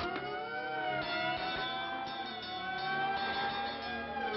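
Cartoon police car siren wailing. It is held at a nearly steady high pitch that swells slightly, after winding up just before.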